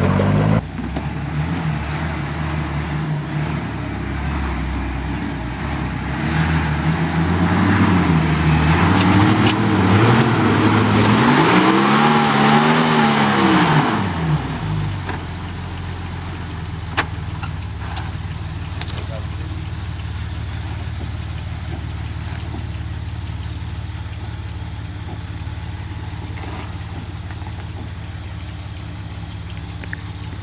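Toyota FJ Cruiser's V6 engine revving under load as it climbs a steep, rutted dirt track, its pitch rising and falling and peaking in a rev up and back down after about eleven seconds. About fourteen seconds in the sound switches to a quieter, steady engine note from a Jeep Wrangler working up the same track.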